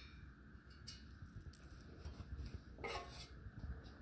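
Faint small clicks and scrapes of screws being unscrewed by hand from a stainless steel machine cover, with one brief louder rasp about three seconds in.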